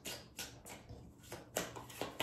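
Tarot cards handled at a deck, a card slid off and turned over, giving a few faint soft clicks and taps.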